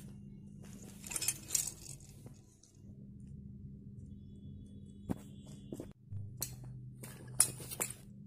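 Small hands handling a shiny mirrored ball ornament: light clicks and clinks, a cluster about a second in and several single taps in the second half, the loudest near the end, over a steady low hum.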